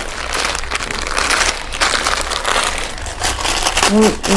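Steady crinkling and rustling with many small clicks, from things being handled as outfits are brought out.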